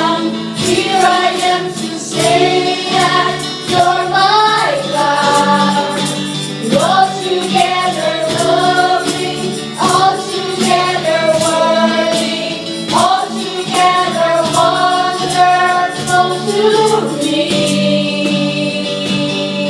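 A live worship band: women singing into microphones, backed by acoustic and electric guitar, keyboard, and a steady beat played on a cajón.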